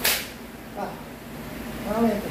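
A sharp swish right at the start as a karate technique is thrown in kata, followed by two short voice sounds, one about a second in and one near the end.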